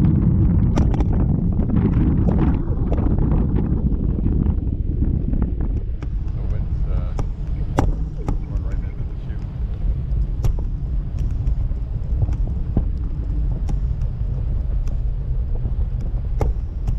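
Wind buffeting the microphone of a camera on a parasail rig in flight: a loud, steady low rumble, heaviest in the first few seconds, with scattered sharp clicks.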